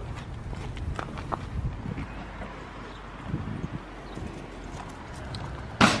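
Scattered light footstep taps on paving and gravel over a low, steady outdoor rumble.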